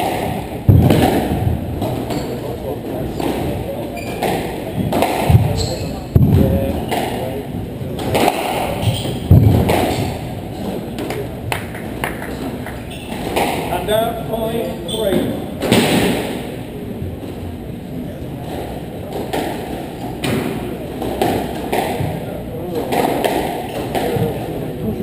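Squash rally: the ball smacking off rackets and the court walls in sharp, irregular hits roughly every second.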